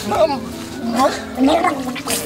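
Men talking, with steady background music underneath.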